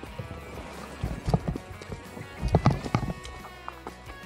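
Irregular knocks and thumps from a loaded mountain bike on a muddy forest trail as it reaches a fallen log. They come in two short clusters, about a second in and again around two and a half seconds, over faint music.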